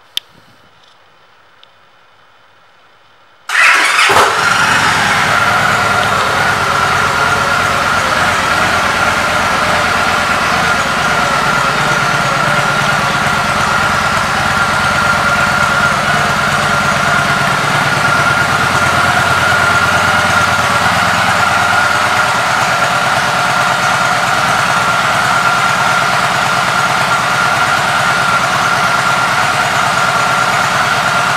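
Victory Vegas 8-Ball's V-twin engine starting up about three and a half seconds in, then idling steadily, with a steady high whine over the idle.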